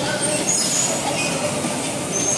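Electric bumper cars driving around the rink: a steady din of their motors and rolling wheels.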